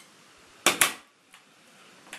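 A small metal piece set down on a stainless steel tray, two sharp metallic clinks in quick succession a little over half a second in.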